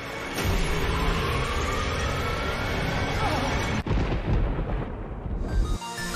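Cartoon soundtrack of rumbling, explosion-like sound effects layered with music, with faint rising tones in the middle and a brief dropout just before four seconds.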